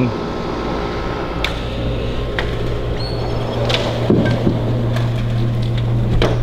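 A steady low hum, with a few sharp clicks and a muffled knock as a door is opened and shut.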